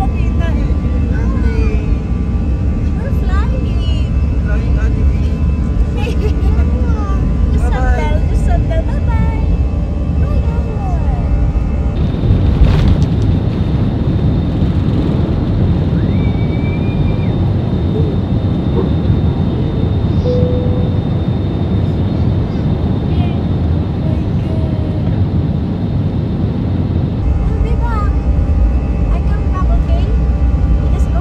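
Steady cabin noise of a passenger jet airliner, the roar of engines and airflow, with faint voices of passengers. The roar shifts abruptly in tone about twelve seconds in and again near the end.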